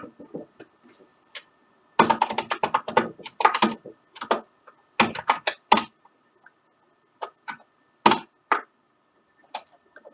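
Typing on a computer keyboard: fast runs of keystrokes for a few seconds, then a handful of single, spaced-out key presses.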